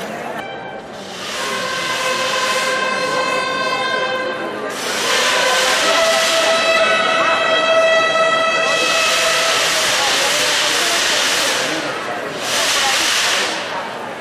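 Procession brass bugles holding two long notes, the second one higher, followed by two loud noisy bursts.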